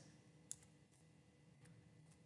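Faint keystrokes on a computer keyboard: a few separate clicks, the clearest about half a second in.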